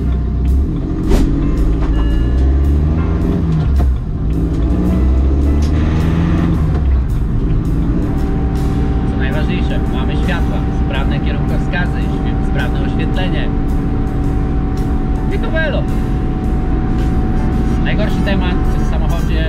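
Cabin sound of a stripped BMW E81 120d race car with no sound deadening. Its 2.0-litre N47 turbodiesel pulls with its pitch rising twice in the first seven seconds or so, then settles into a steady, loud cruising drone with a thin steady whine over it.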